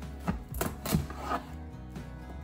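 A kitchen knife sawing through the hard rind of a microwave-softened spaghetti squash on a plastic cutting board: several short scraping, crunching strokes in the first second and a half. The squash is easier to cut but still semi-difficult. Faint background music plays underneath.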